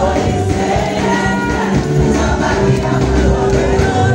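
Loud gospel praise music with many voices singing together over a steady bass-heavy beat.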